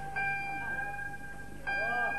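Live band music: held instrumental notes ringing on, with a fresh note struck just after the start and another near the end.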